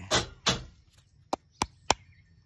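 A deck of oracle cards being handled and knocked against a metal mesh table: two short knocks, then three sharp clicks in quick succession near the end.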